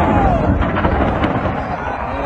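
A deep rumbling boom that starts suddenly and rolls on with a crackle, over the voices of a crowd of onlookers.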